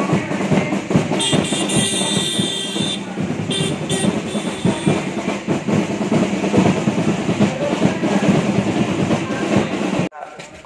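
Drums beaten in fast, continuous rolls.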